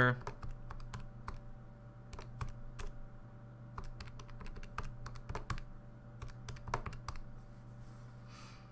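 Keys tapped in a quick, irregular run of clicks as numbers are entered into a calculator, over a faint steady hum.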